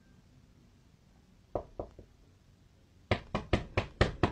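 Hand knocking hard on a door: three lighter knocks about a second and a half in, then a loud, quick run of four smacks near the end.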